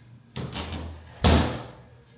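Framed glass shower door being moved: a rubbing slide, then a sharp knock as it shuts, a little past a second in.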